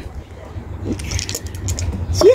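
A pair of dice rattling in a cupped hand, a run of quick light clicks in the second half, over a steady low wind rumble on the microphone.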